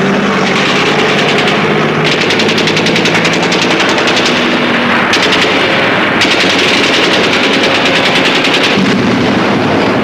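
Long bursts of rapid machine-gun fire, starting about two seconds in and running with short breaks until near the end, over a low steady drone.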